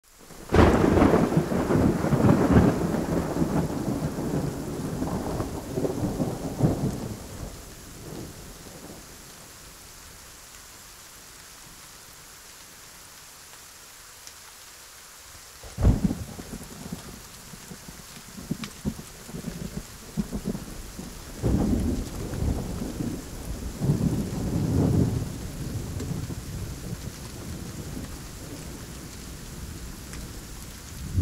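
Thunder over steady rain. A long roll of thunder fades over the first seven seconds or so, a sharp crack comes about sixteen seconds in, and further rolls follow, with the rain hissing throughout.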